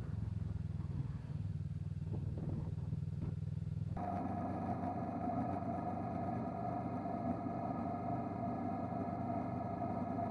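Motorcycle engine running steadily at cruising speed, a low drone with road and wind noise. About four seconds in the sound cuts abruptly to a brighter steady drone with a strong mid-pitched hum.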